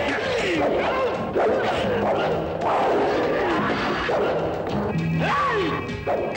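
Action film trailer soundtrack: dramatic music mixed with fight sound effects, blows and crashes, and voices crying out.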